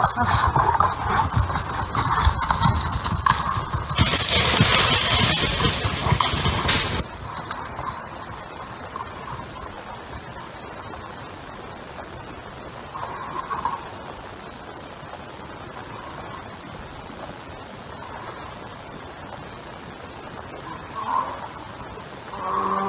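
A sudden loud burst, then a black bear crashing off through dry leaf litter and brush for about seven seconds before it fades to faint background, the sound of a bear bolting from the bait as it is shot.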